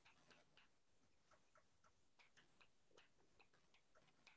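Faint chalk writing on a blackboard: irregular taps and short scratches of the chalk stick, several a second.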